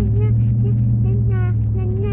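A boy's voice in short, held wordless sung notes, over the steady low drone of a car heard from inside the cabin.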